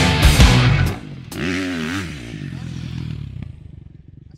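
Loud heavy rock music that cuts off about a second in. A dirt bike engine then revs, its pitch wavering up and down before it fades away.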